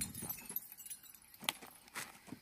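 Faint light metallic jingling and small clicks, with a sharper click about one and a half seconds in.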